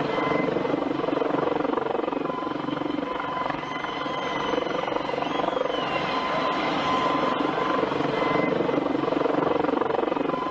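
Helicopter running: a steady, continuous engine and rotor drone with a held tone in it.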